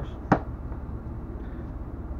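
A single sharp knock about a third of a second in, as a tablet in a folio case is set down on a wooden desk, over a steady low hum.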